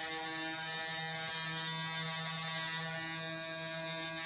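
Small handheld electric motor held against a gyroscope's rotor, spinning it up to full speed: a steady buzzing whine at an even pitch.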